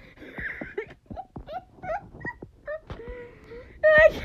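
A person laughing helplessly and breathlessly: breathy wheezes at first, then short, high, squeaky sounds and a longer held note near the end.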